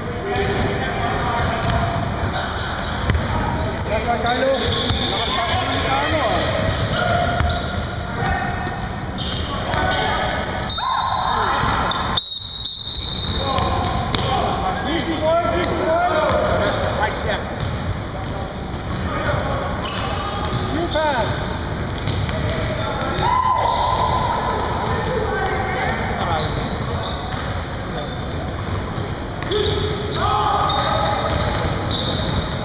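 Basketball dribbling and bouncing on a hardwood gym floor during play, with players' voices in a large, echoing gymnasium. A steady held tone sounds twice, about 11 s and 23 s in.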